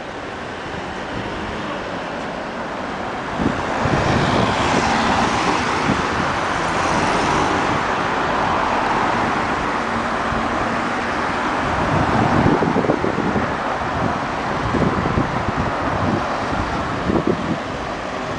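Street traffic noise: cars passing on a city road, a steady rush that swells about three and a half seconds in and holds.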